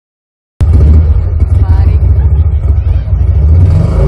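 Loud, steady low rumble overloading the microphone, starting abruptly about half a second in, with a voice faintly over it.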